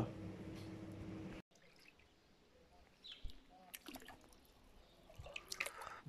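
A steady low hum for about the first second and a half, then, after a cut, faint splashing and dripping of shallow swimming-pool water around bare feet.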